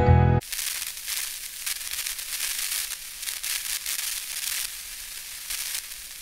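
Guitar music cuts off just after the start, followed by a steady crackling hiss that flickers without any tone or rhythm.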